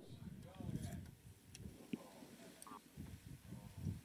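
Faint background voices, like distant radio-loop chatter, over a low irregular rumbling, barely above near silence.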